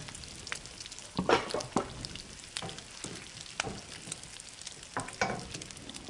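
Thin crepe batter sizzling softly in a hot frying pan, with a few light clicks and taps scattered through.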